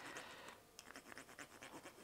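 Faint, quick scratching of a stick of hard engineer's chalk rubbed back and forth along an engine oil dipstick.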